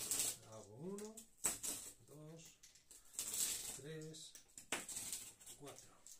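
Makedo Roller-up's toothed wheel rolled firmly over corrugated cardboard, scraping and clicking in several short strokes as it perforates a cutting line. A man's voice talks over it.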